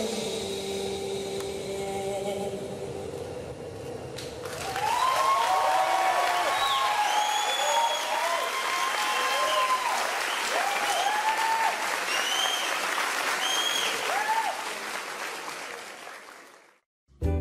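The closing notes of a song fade out, then about four and a half seconds in an audience breaks into loud applause, with many whoops and cheers over it. The applause dies away near the end.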